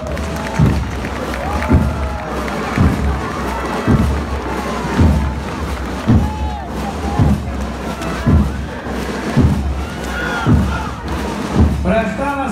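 Crowd cheering and applauding, with shouts rising over it. Under it a bass drum beats a steady march time, about one stroke a second.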